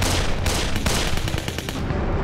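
Rapid battle gunfire, shots cracking in quick irregular succession over a low rumble, dying away near the end.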